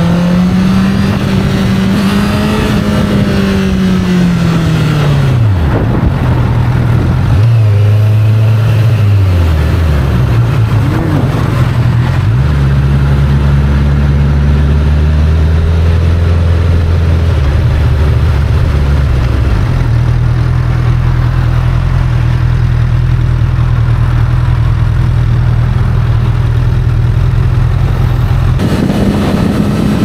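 Honda CBR1000RR's inline-four engine heard from the rider's seat at highway speed. The revs climb, then fall away steeply about five seconds in as the throttle closes. It then runs at steady lower revs, stepping in pitch a couple of times, the last change near the end, over steady wind and road noise.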